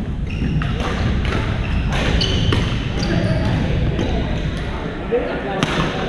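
Badminton rackets striking shuttlecocks in a large echoing gym: sharp cracks at irregular intervals from several courts, the loudest just before the end, with a few short shoe squeaks on the court floor.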